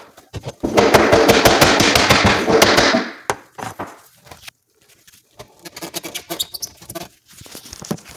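Hammer striking a kitchen cabinet face frame to knock it loose: a loud, rapid run of blows for about two seconds, then scattered lighter knocks and taps.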